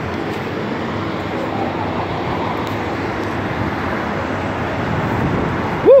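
Steady rumble of traffic and idling semi trucks, ending with a woman's short rising-and-falling "mm".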